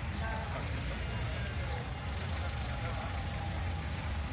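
Busy street ambience: the steady low rumble of a motor vehicle running, with the indistinct chatter of passers-by over it.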